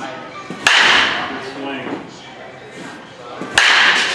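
Baseball bat striking pitched balls twice, about three seconds apart, each a sharp crack followed by a short ring.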